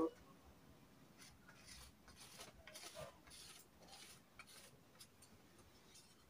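Faint, short scratching strokes of tailor's chalk drawn along a wooden ruler on fabric, about two a second, starting about a second in, as a pattern line is marked out.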